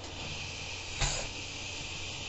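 Compressed air at about 40 PSI hissing steadily from a rubber-tip blow nozzle into a homemade 2-inch schedule 40 PVC pneumatic cylinder. A single thump about a second in comes as the bolt ram pushes out, faster than expected.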